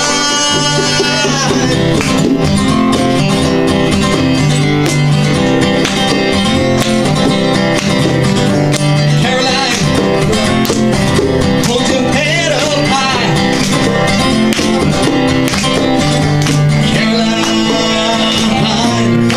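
Live acoustic band music: acoustic guitars strummed and picked together in a steady passage of the song, with no sung lyrics picked up.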